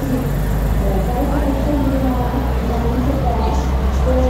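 Karosa city buses' diesel engines running close by with a steady low rumble, with people talking over it.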